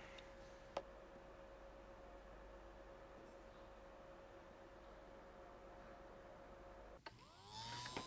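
Near silence with a faint steady hum and one soft click about a second in. Near the end, a rising whine as the small electric pump motor of a 2005 Thermaltake Tide Water cooler spins up again after its loose cable has been re-soldered.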